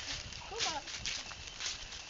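Footsteps shuffling and crunching through dry fallen leaves, with a brief high-pitched vocal sound, falling in pitch, about half a second in.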